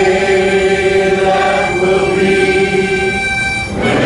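Large two-tiered harmonica playing held chords, moving to a new chord every second or two, with a short breath break near the end.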